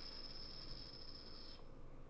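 Quiet room tone with faint, high, steady ringing tones that fade out about one and a half seconds in.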